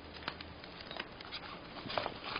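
Rustling of a fabric longboard bag being handled around a longboard, with a few scattered light clicks and scrapes.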